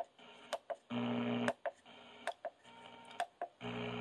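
A 1998 Bose Acoustic Wave CD3000 radio being stepped through its AM presets: a series of short clicks, each followed by a brief, thin snatch of AM station audio before the next change. One snatch about a second in is the loudest and carries a steady pitched sound.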